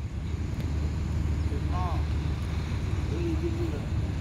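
Steady low rumble of street traffic, with brief faint voices in the distance twice.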